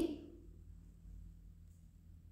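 Near silence: faint room tone with a low hum, just after a woman's voice trails off at the very start.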